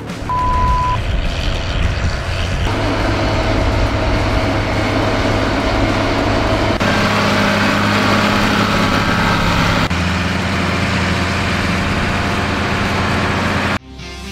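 Engine of a walk-behind two-wheel tractor running steadily under load while driving a front-mounted mower through brush, its hum shifting in pitch a few times. A short high beep sounds about half a second in, and the engine sound cuts off abruptly near the end.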